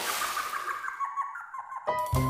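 A cartoon water-splash sound effect: a burst of hiss that fades away, with a run of short blipping tones stepping down in pitch over it. Music cuts in suddenly at the very end.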